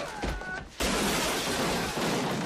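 Film fight sound effects: a sudden, loud crash of shattering glass and crockery about a second in, as a man is thrown onto a laid restaurant table. The crash keeps going for over a second.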